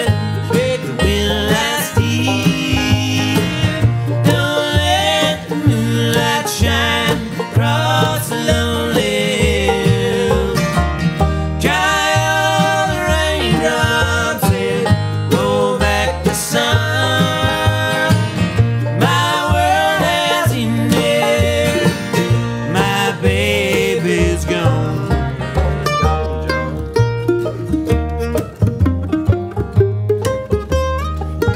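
Acoustic bluegrass band playing an instrumental break: banjo, mandolin, acoustic guitar and upright bass, with the banjo to the fore. Near the end the mandolin comes forward.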